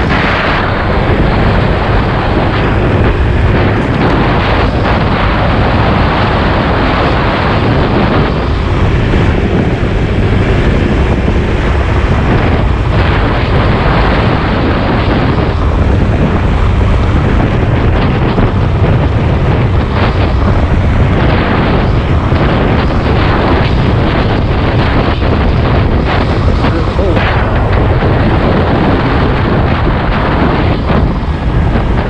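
Wind buffeting the camera microphone on a moving Honda PCX 125 scooter at about 60 km/h: a loud, steady rushing with a low rumble, over the running of the scooter on the road.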